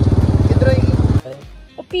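Motorcycle engine running with a rapid, even pulsing beat while riding. It cuts off abruptly about a second in, and music with a singing voice starts.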